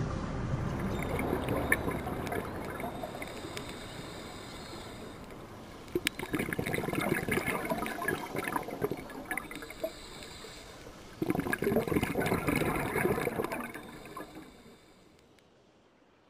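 Water sound recorded underwater: a rushing, gurgling haze with crackling, louder in two stretches about six and eleven seconds in, then fading out near the end.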